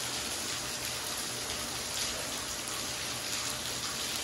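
Rain falling steadily on a wet paved yard, an even hiss with no distinct drops or breaks.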